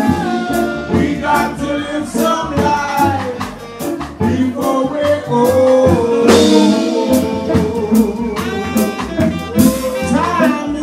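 Live jazz band playing, with a wavering lead melody over drum kit.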